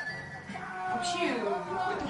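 A person's drawn-out yell that slides down in pitch from about a second in, over background electronic music.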